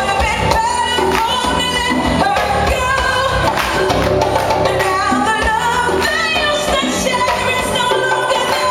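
A woman singing lead live, backed by congas and guitar.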